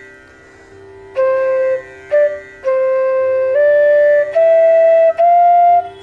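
Bansuri (bamboo transverse flute) playing a short sargam run of about six held notes, mostly stepping upward, starting about a second in. A steady low drone sounds underneath.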